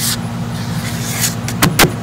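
A steady low mechanical hum, with two sharp knocks close together about a second and a half in.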